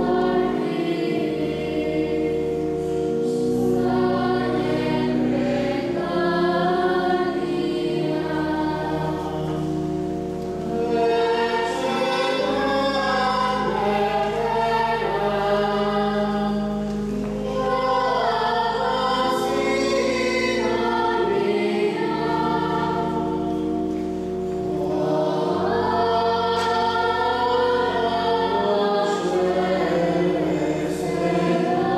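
Choir singing sacred music during the Mass. Beneath it, sustained low notes change in steps every few seconds.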